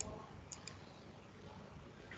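Three faint, sharp clicks within the first second over low background noise.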